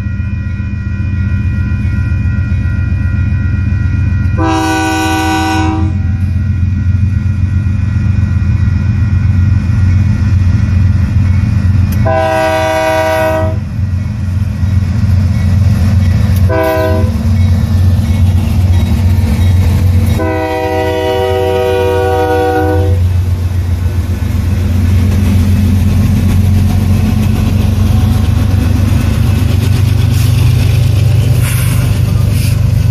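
Diesel freight locomotive sounding its horn in the grade-crossing signal: long, long, short, long. Under the horn its engines rumble steadily, louder near the end as the loaded coal train reaches and passes.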